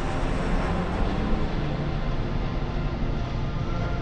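Cinematic sound effect: a steady low rumble for a huge asteroid coming down into the ocean just before impact.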